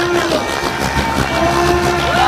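Radio-controlled helicopter in aerobatic flight: a steady whine with overtones from its rotor drive that glides down in pitch about a third of a second in, then comes back about 1.4 s in as the load on the rotor changes.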